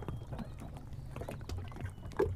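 Faint, short calls of an unidentified duck-like waterbird, a call that is not a duck's, over a low steady rumble.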